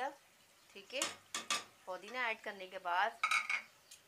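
Silicone spatula stirring minced-meat curry in an aluminium pot, knocking sharply against the pot a few times about a second in.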